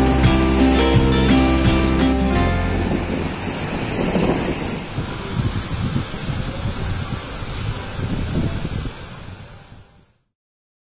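Background music ends about two to three seconds in, giving way to sea surf breaking and washing up on a sandy beach, which fades out near the end.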